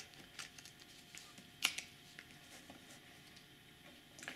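Quiet handling of a sterling silver pen: a few faint clicks and ticks, the sharpest about one and a half seconds in.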